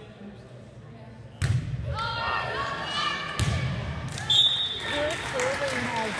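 A volleyball struck twice in a gym hall, about two seconds apart: the serve about a second and a half in, then the return hit. Voices of players and spectators call out between and after the hits.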